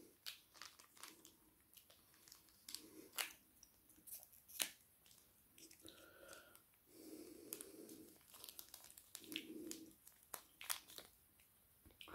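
Faint tearing and crinkling of a plastic mayonnaise sachet being torn open and squeezed out: scattered small clicks and rustles with a few sharper snaps.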